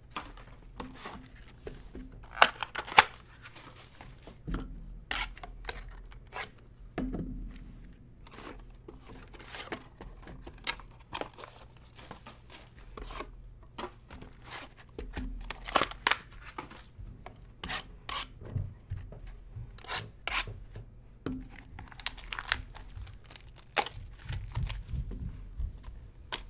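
Trading-card boxes being unwrapped and opened by hand: tearing of wrapping and cardboard, with rubbing and scraping as the boxes and a foil-wrapped pack are handled, in a string of short rips and clicks.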